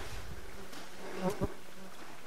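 A flying insect buzzing with a steady low hum.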